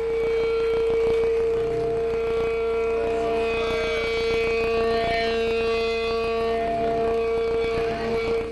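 Electric guitar feedback from the amplifier: one steady high tone held unbroken, with fainter ringing tones and the band's noise beneath it.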